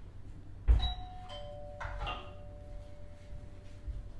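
A sharp knock, then a two-note doorbell chime: a higher note followed by a lower one that rings on for a couple of seconds.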